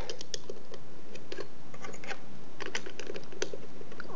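Light, irregular plastic clicks and taps of Lego pieces being handled as a minifigure is pushed into the seat of a small Lego car and the roof piece is pressed on.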